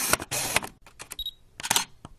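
Camera sound effects: a quick run of shutter clicks and short mechanical whirs, with a brief high beep about a second in.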